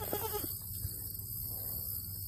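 A young goat bleats once, briefly, right at the start.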